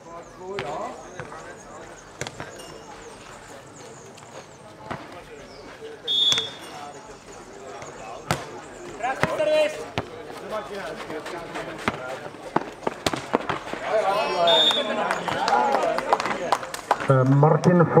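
Nohejbal rally on a clay court: the ball being kicked and bouncing, giving sharp knocks scattered through, with players' voices calling out, busier in the last few seconds.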